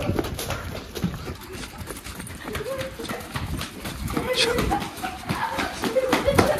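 Quick footsteps and a dog's paws on a concrete lane as a person and a leashed Labrador hurry along, many short hard steps in a fast rhythm. A person's voice comes in now and then.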